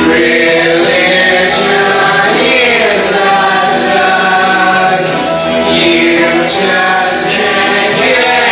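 A group of voices singing together in harmony, choir-like, on long held notes, with a few sung consonants breaking through.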